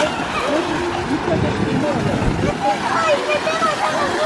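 Busy swimming-pool ambience: many voices of swimmers and sunbathers chattering and calling over one another, over the steady splash of a water-spout fountain pouring into the pool. A low rumble joins in the middle.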